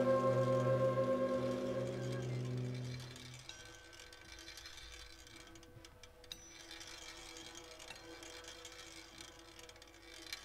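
Large jazz ensemble of saxophones and brass holding a sustained low chord that fades out about three seconds in. What follows is a hushed passage of soft held tones and a few light clicks.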